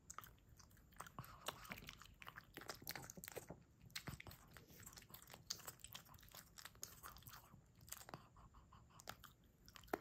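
A pug chewing pieces of fresh fruit: a faint, irregular run of short chewing clicks and smacks, with a sharper click near the end.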